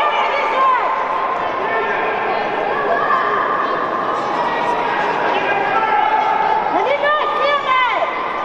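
Many voices in a large indoor sports hall: spectators and coaches chattering and calling out during a race, with several loud shouts about seven seconds in.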